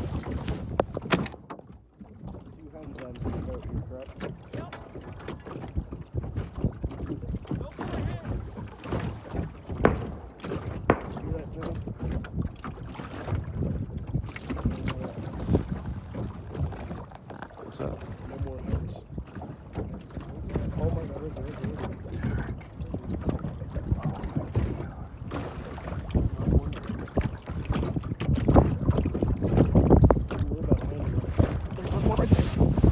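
Small waves slapping and lapping against the hull of a floating layout blind, with wind rumbling on the microphone and occasional sharp knocks.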